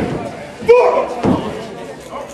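A man's loud shouted calls in a large echoing hall: a sudden one about two-thirds of a second in and a shorter one half a second later.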